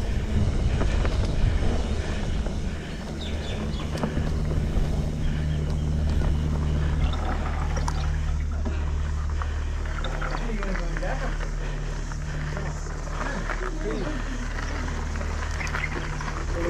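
Trek Remedy 8 mountain bike rolling downhill: tyres on a dirt trail and then gravel, with wind rumble on the handlebar-mounted camera and knocks and rattles over bumps in the first couple of seconds. Faint voices come in during the second half.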